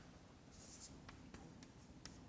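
Chalk writing on a blackboard: faint scratching with a few light taps of the chalk, very quiet.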